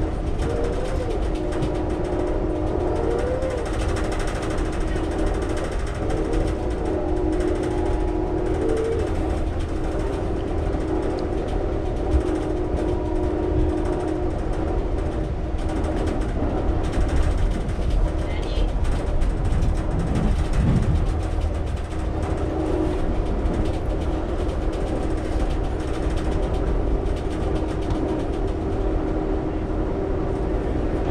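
Steady running noise inside a moving Amtrak passenger train: a low rumble from the wheels on the rails under a steady hum.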